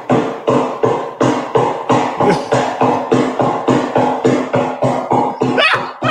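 A man's voice repeating short syllables in a fast, even, galloping rhythm, about three to four a second on one held pitch: speaking in tongues as a chant.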